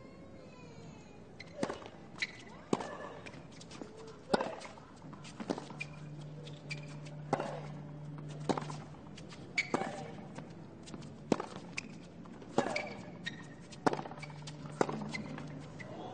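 Tennis balls being struck by racquets in a long hard-court rally: sharp hits about once a second, trading back and forth, with quieter bounces between them.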